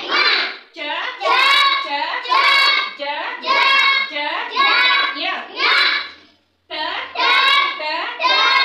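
A class of children chanting Hindi conjunct letters aloud in unison, one syllable after another in a steady rhythm, following the teacher's pointing, with a brief pause about six seconds in.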